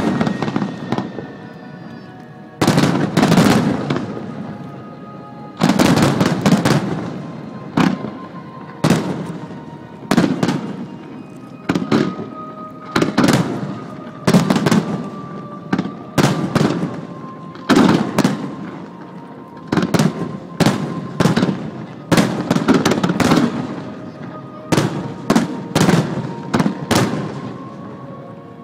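Aerial firework shells bursting in a display. Sharp bangs come in quick succession, about one a second after a short pause at the start, and each trails off in a fading rumble.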